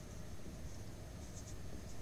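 A marker pen writing on a whiteboard: a few faint, short strokes.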